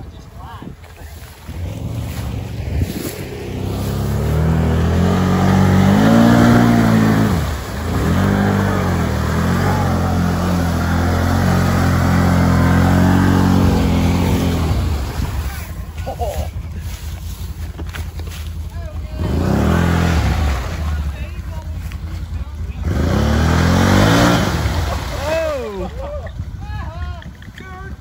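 Can-Am Renegade X mr 1000R ATV's V-twin engine revving hard as it is driven through deep bog water, its pitch rising and falling. A long stretch of revving runs for over ten seconds, followed by two shorter bursts near the end.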